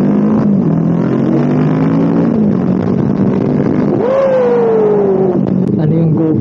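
Kawasaki Ninja 650's parallel-twin engine running under way in traffic, with wind and road noise, picked up by a mic inside the rider's helmet. The engine note rises and falls a little. About four seconds in, a higher tone slides steadily down over about a second and a half.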